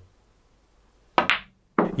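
A single sharp knock about a second in that rings out briefly: a snooker cue's tip striking the cue ball.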